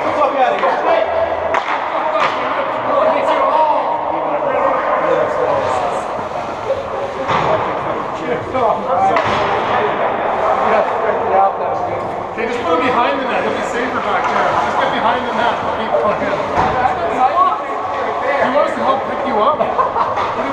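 Reverberant, overlapping chatter of several hockey players' voices echoing in an ice rink, with occasional sharp knocks and bangs scattered through it.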